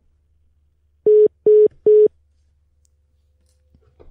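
Three short beeps at one steady pitch, coming about a second in and a little under half a second apart: the disconnect tone of a phone or internet call hanging up.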